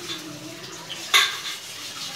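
A metal utensil against an aluminium pressure-cooker pot: light clinks, with one sharp knock about a second in.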